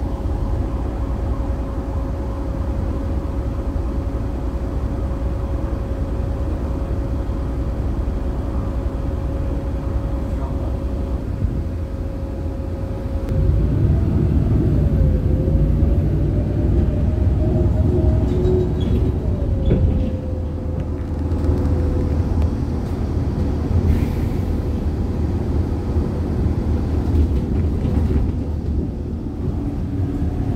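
City bus heard from inside the passenger cabin: engine and running noise with a steady low rumble and a thin steady hum. About halfway through the rumble grows louder, and the hum wavers up in pitch before settling back down.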